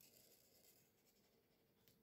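Near silence, with only the faint scratch of a marker tip drawing a line along paper.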